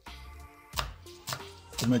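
Kitchen knife chopping an onion on a wooden cutting board: a few separate sharp cuts, over soft background music.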